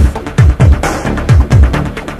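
Old-school EBM / dark electro track with a heavy kick drum in a repeating pattern, each kick falling in pitch, under dense synth layers and fast high percussion.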